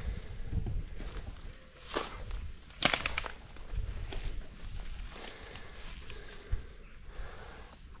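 Footsteps through leaf litter and woodland undergrowth, with a sharp crackle about three seconds in.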